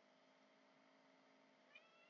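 Near silence with a faint steady hum, then a short, faint meow from a domestic cat near the end.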